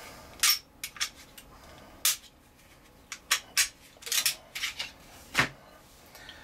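Glock 17 Gen 4 pistol being field-stripped by hand: an irregular series of sharp clicks and clacks as the slide comes off the frame, the recoil spring assembly is handled, and the parts are set down.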